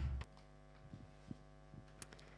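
Intro music cuts off a fraction of a second in, leaving a faint, steady electrical mains hum with a few soft ticks.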